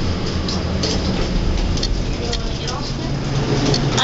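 Low steady hum of a Schindler elevator heard from inside the cab, with a sharp click near the end.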